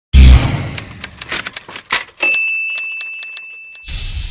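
Typewriter sound effect: a loud thump, then a quick run of key strikes, then the carriage-return bell dings once and rings on for more than a second. A whoosh begins just before the end.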